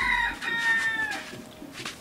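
A rooster crowing: one long call, held level, then dropping slightly in pitch as it ends about a second in.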